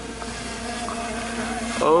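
Quadcopter drone's propellers humming steadily in several tones, gradually getting louder as it flies in.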